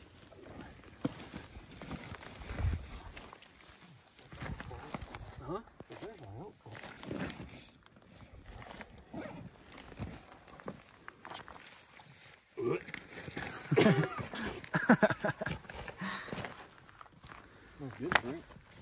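Rustling of a cloth game bag and shuffling footsteps on gravel as a dead javelina is worked into the bag, with indistinct voices, loudest for a few seconds past the middle.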